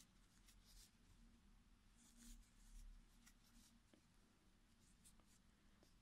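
Near silence, with faint, brief scratchy rustles of wool yarn being drawn through by a metal crochet hook as the stitches are worked by hand.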